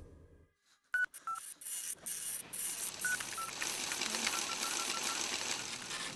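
Mobile phone keypad beeps: two short beeps about a second in, two more about three seconds in, then a quick run of about six short beeps near the end, over a steady hiss.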